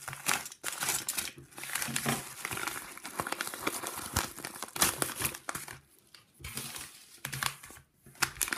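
Bubble-lined paper mailer crinkling and tearing as it is slit with a box cutter and pulled open, in irregular crackles with a brief lull about six seconds in.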